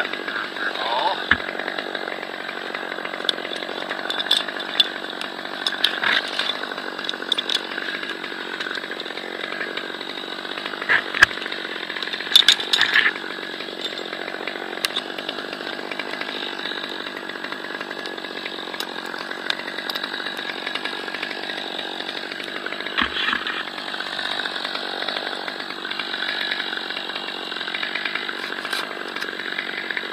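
A two-stroke top-handle chainsaw, a Stihl MS 200T, running steadily close by without surging, with several sharp clicks and knocks from branches and climbing gear.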